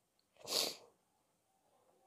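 A single short, sharp burst of breath from a person, about half a second in and about half a second long.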